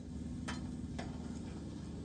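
Two sharp clicks about half a second apart over a faint, steady low hum.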